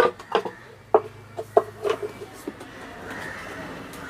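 Wooden bird nest box being handled: a handful of short, sharp wooden knocks and clicks, spaced irregularly over the first two and a half seconds, then only a faint background.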